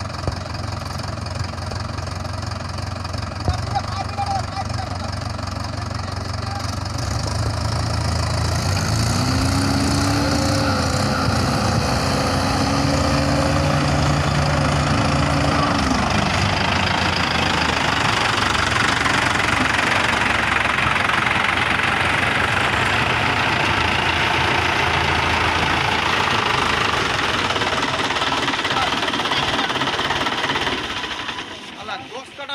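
Mahindra tractor diesel engines running, then working harder from about eight seconds in as the tractors try to get the loaded, stuck 595 Di Turbo up onto the road. A steady higher whine joins between about nine and sixteen seconds.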